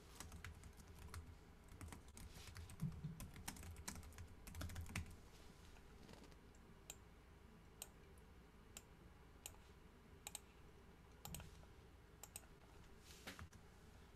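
Faint typing on a computer keyboard: quick runs of keystrokes in the first five seconds, then scattered single key clicks.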